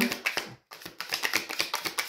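Overhand shuffling of a deck of oracle cards: a rapid, uneven run of papery clicks and slaps as the cards drop against each other.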